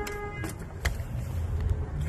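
Low rumble of wind and handling noise at the open driver's door of a pickup truck cab, with a short steady tone in the first half second and a couple of sharp clicks soon after.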